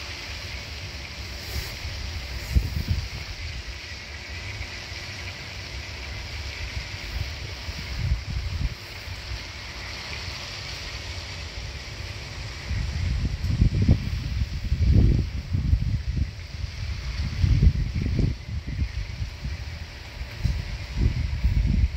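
Wind buffeting the microphone in irregular gusts, heaviest in the second half, over a steady high hiss.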